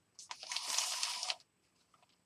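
Paper rustling for about a second, as a sketchbook page is handled during pen drawing.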